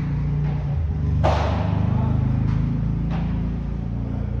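Padel ball hit back and forth with solid rackets in an indoor hall: one loud, sharp hit about a second in that rings on in the hall's echo, and three softer hits before and after it. A steady low drone runs underneath.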